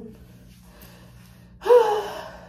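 A young woman's short, loud vocal outburst with a slightly falling pitch, about a second and a half in, after a quiet stretch. A steady low hum runs underneath.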